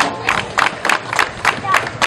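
A small crowd clapping by hand in scattered, uneven claps, about three or four a second.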